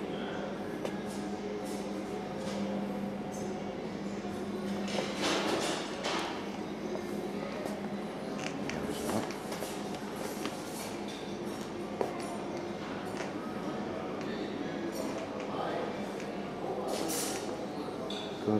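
Indoor room ambience with a steady low hum, faint voices in the background, a few rustling sounds and a single sharp click about two-thirds of the way through.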